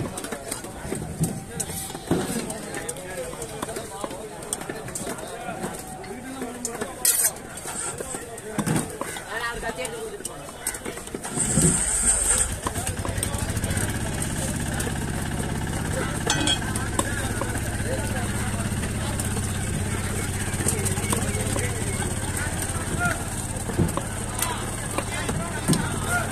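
Scattered sharp knocks of a knife on a wooden chopping block as seer fish is cut into steaks. About halfway through, an engine starts with a loud burst and then keeps running steadily.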